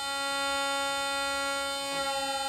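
A single string of a bass viola da gamba bowed in one long, steady note, sounding together with the steady electronic reference tone of a tuning box while the string is being tuned to a D.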